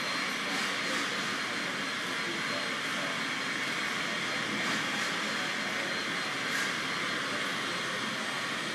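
A steady, even rushing noise with no distinct events, with faint voices in the background.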